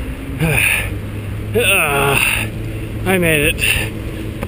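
A tired runner's wordless voice sounds: a short groan, then two longer groans with wavering pitch about one and a half and three seconds in, between short breaths, over a steady low rumble.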